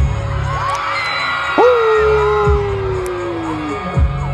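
Live pop dance music played over concert speakers, with a heavy bass beat, and an audience cheering and whooping over it. A long held high note jumps in about one and a half seconds in and slowly sinks in pitch until near the end.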